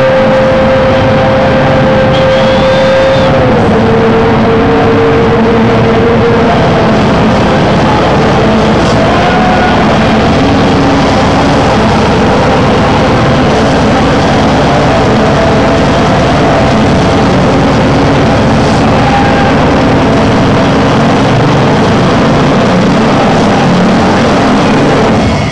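Loud, heavily distorted live electronic music over a club sound system, recorded close to overload: a dense noisy wash with a held synth tone that steps down in pitch a few seconds in.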